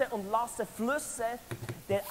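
Speech only: a person talking, which the speech recogniser did not write down.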